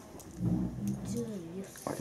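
A low voice humming a short wavering phrase without words, lasting about a second.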